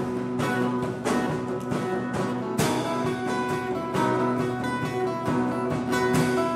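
Blues-rock trio playing live: a diatonic harmonica cupped against a handheld microphone plays held notes over strummed acoustic guitar and a steady drum beat.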